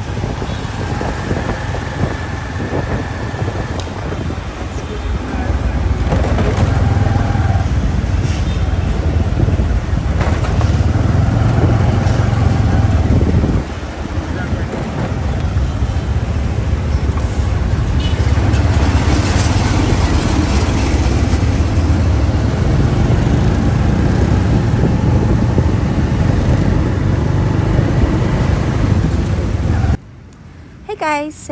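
Riding in a tuk-tuk through city traffic: a steady low engine rumble with road and wind noise and the sound of surrounding motorbikes and cars. The noise drops briefly about halfway through.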